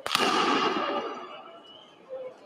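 A single sharp bang, such as a tear-gas launch or blast, in a street clash between riot police and protesters. Its long echo dies away over about a second and a half.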